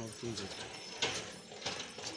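Mangoes being handled in a metal pan: a few sharp knocks and clatters, the loudest about a second in, with snatches of voices.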